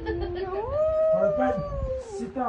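A young girl's long howl-like vocal note: it starts low, rises in pitch about half a second in, then is held and slides slowly down.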